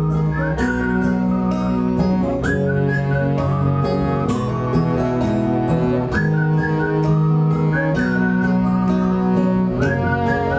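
Live acoustic folk band playing an instrumental passage: acoustic guitar under long held low notes, with a high, wavering melody line on top.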